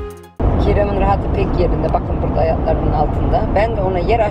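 Background music cuts off about half a second in, then steady road and engine noise inside a moving car, with a person talking over it.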